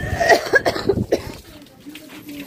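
A person coughing, several short coughs in quick succession during the first second or so.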